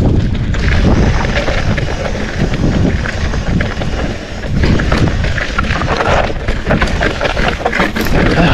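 Mountain bike rolling fast downhill over rock slabs and loose rubble: tyres crunching on stone, with constant knocks and rattles from the bike over rough ground. Wind rushes across the microphone throughout.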